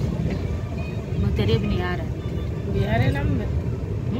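Steady low rumble and clatter of a moving passenger train, heard from inside the coach. People's voices talk over it in two short stretches, about a second in and again near three seconds.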